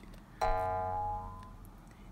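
A chime sound effect: one bright ringing note that starts suddenly about half a second in and fades away over about a second and a half.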